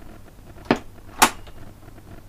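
Two sharp clicks about half a second apart, the second louder: the controls of a 1964 Peto Scott valve reel-to-reel tape recorder being worked by hand. A faint low hum runs underneath.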